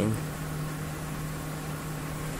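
Cooling fans on the heat sinks of a homemade Peltier mini fridge running with a steady hum and a low tone.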